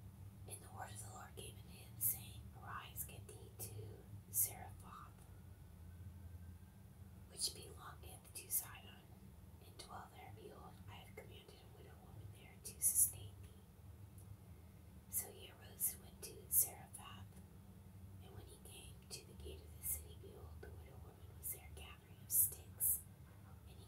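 A person whispering, reading aloud in short breathy phrases with sharp hissing s-sounds and brief pauses between them, over a faint steady low hum.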